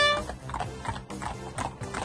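Horses' hooves clip-clopping on a tarmac lane in an uneven run of knocks. A loud held hunting-horn note cuts off just after the start.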